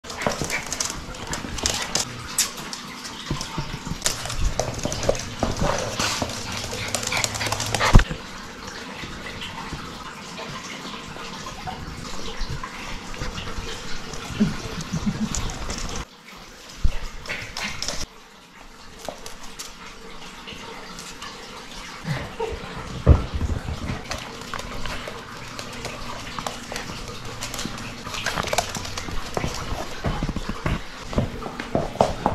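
Six-week-old cavapoo puppies barking and whimpering as they play, with many short clicks and taps as they move on a hard floor.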